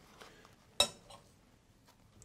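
A single sharp metallic clink on a stainless steel cooking pot a little under a second in, with faint handling and rustling around it.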